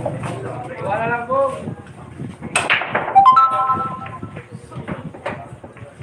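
A sharp knock about two and a half seconds in, followed by a brief ringing of a few steady tones, amid background voices.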